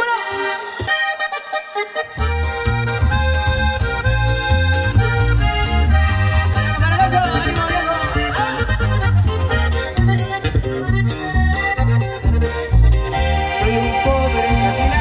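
Live norteño-style band playing an instrumental passage: accordion leads over a strummed acoustic guitar, and electric bass comes in about two seconds in.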